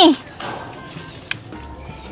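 Steady high-pitched insect chirring in the background, with one faint click a little past the middle and a low hum coming in near the end.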